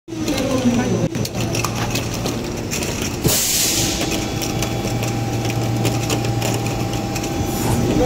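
Preform injection moulding machine running: a steady low hum, with a sharp clunk about three seconds in followed by a short hiss.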